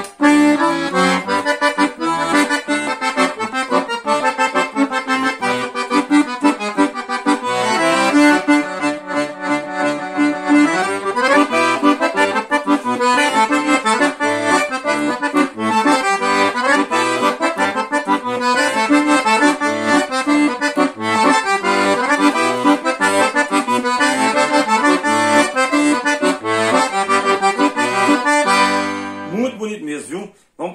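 Scandalli 120-bass piano accordion played: a quick melody on the treble keys over a steady left-hand bass-and-chord accompaniment, ending on a held chord just before the playing stops.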